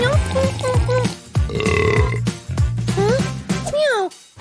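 Cartoon voice effects over children's background music with a steady bass line: short gliding squeaks and yelps at the start and near the end, and a buzzy held sound about halfway through.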